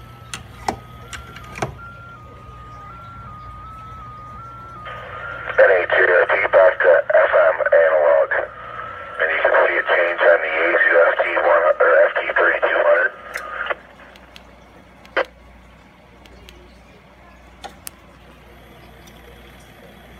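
Narrow-band speech coming back over the Yaesu FTM-3200DR transceiver's speaker from the Echolink echo test server: the operator's own FM test transmission played back. The voice runs from about five seconds in to about fourteen, with a short break near nine seconds. Before it comes a faint tone that steps slightly in pitch, and after it a few clicks.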